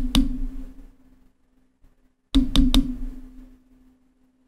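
Knocks from a hand handling a clip-on pop filter and the microphone it is mounted on, picked up directly by that microphone. There are two clusters of sharp taps, one at the start and one about two and a half seconds in, and each is followed by a low ringing hum that fades away.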